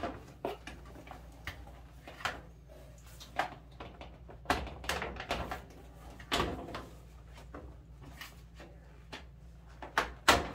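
Short plastic clicks and knocks, one every second or so, as hands handle wire connectors and parts in an opened dryer control console, over a low steady hum.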